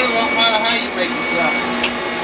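Old electric meat grinder's motor running steadily as it grinds raw wild hog meat.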